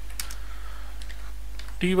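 A few keystrokes on a computer keyboard, in two small clusters, over a steady low hum.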